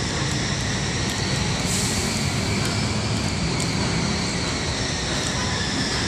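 Steady outdoor background rumble with no clear single event, heaviest in the bass.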